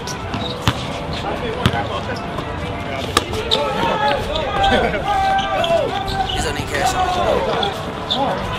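A basketball bouncing a few times on an outdoor hard court, sharp single bounces about a second apart. Players' voices call out across the court from the middle onward.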